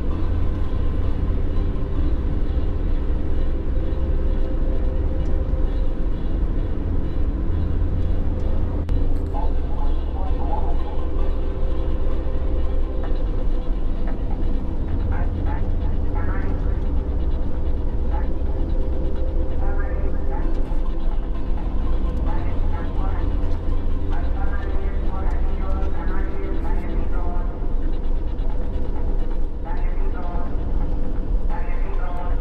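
Steady low rumble of a vehicle's engine and tyres heard from inside the cabin while it cruises on a highway. Faint voices talk over it from about nine seconds in.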